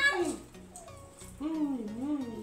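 A young child's wordless voice: a drawn-out call that rises and falls in pitch about a second and a half in, after a brief trailing vocal sound at the start.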